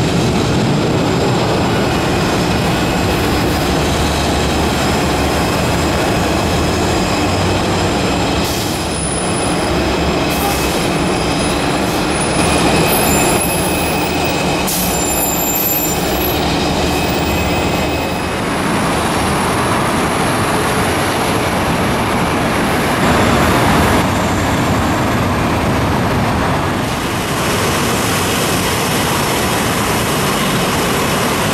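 Boeing 747-400 jet engines running at low power, a loud steady rumble with high whining tones over it, as the airliner readies to taxi and then taxis.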